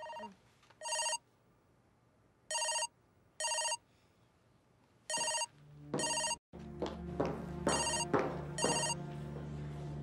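Mobile phone ringtone: short electronic double rings, a pair about every two and a half seconds, repeating until the call is answered. A low steady background comes in about halfway through.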